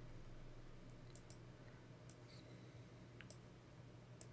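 Near silence: a faint steady hum with a few soft clicks scattered through it.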